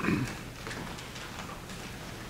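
Footsteps and light clicks of communicants walking to and from the altar rail in a church, with a short thump right at the start.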